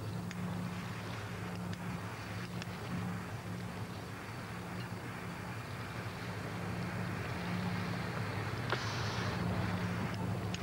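Outdoor background noise with a steady low engine-like hum. A brief hiss comes about nine seconds in.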